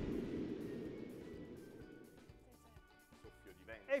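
Tail of a short TV quiz-show segment jingle, dying away over the first couple of seconds to a faint remnant.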